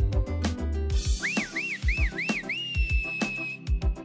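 Background music with a drum beat, broken about a second in by a high whistle: four quick up-and-down swoops, then one long held note that stops shortly before the end.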